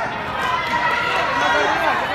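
Spectators and coaches calling out and shouting during a sparring bout, over a constant crowd background in a large hall.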